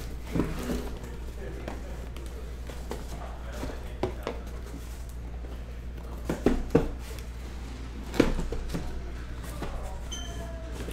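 Cardboard trading-card hobby boxes being handled and set down on a table: a few light knocks and scrapes, with three close together about six and a half seconds in and a sharper knock about two seconds later.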